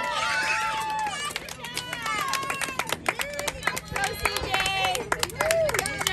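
Spectators cheering with high-pitched shouts, joined by scattered hand claps that thicken over the second half.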